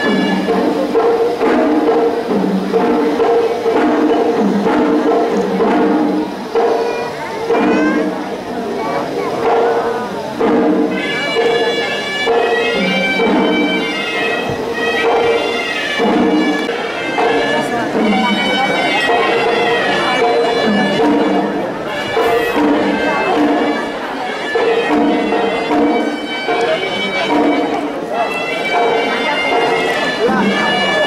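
Sri Lankan temple hevisi music: a reedy double-reed horanewa shawm plays a winding, bagpipe-like melody over a repeating drum pattern, with crowd voices underneath.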